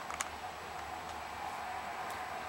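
Steady low room hiss with one short, sharp click a fraction of a second in.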